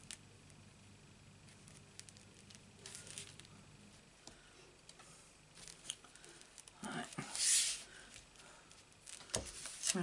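Soft rustles and small taps of cardstock pieces being pressed and moved by hand on a craft mat, with a louder short rustle about seven seconds in.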